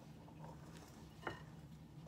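A spatula gently folding flour into stiff-beaten egg whites in a glass bowl: soft, faint sounds over a low steady hum, with one brief, slightly louder touch just over a second in.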